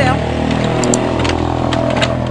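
Noisy motorcycle passing along the street, its engine note falling in pitch as it goes by.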